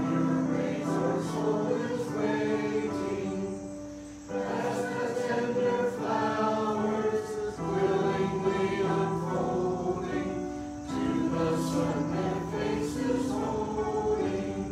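A small congregation singing a hymn to electronic keyboard accompaniment, in phrases of a few seconds with short breaks between.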